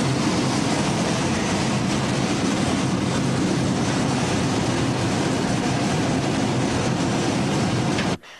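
Steady, loud rushing noise with a low hum underneath, from a smelter ladle pouring molten material into a pit amid plant machinery.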